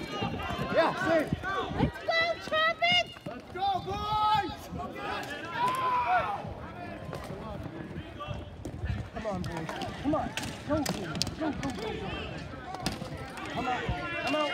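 Players and spectators calling out and shouting during a ball hockey game, the voices thickest in the first half. Later come several sharp clacks of plastic sticks and ball.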